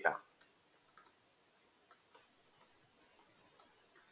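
A few faint, scattered computer keyboard keystrokes over otherwise quiet room tone.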